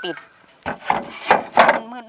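A corrugated roofing sheet being set down on the wooden lid of a bee bait box as a cover, making several knocks and scrapes of sheet against wood, the loudest about a second and a half in.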